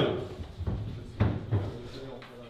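Fading room noise after a team's shouted huddle count, broken by three sharp thumps about a second in.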